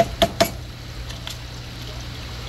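Three quick clicks of hard plastic in the first half second: PVC pipe and valve fittings knocking together as they are handled. A steady low hum continues underneath.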